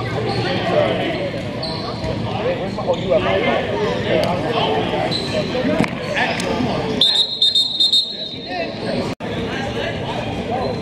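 Players' voices calling and chattering in a large indoor sports hall. About seven seconds in, a referee's whistle sounds shrilly for about a second, ending the play. The audio drops out for an instant near the end.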